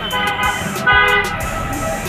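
Vehicle horn honking: a steady toot, then a louder one about a second in.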